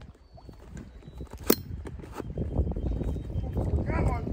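Handling noise from a phone being held and moved by hand: a low rubbing rumble that grows louder, with a few light knocks and one sharp click about a second and a half in.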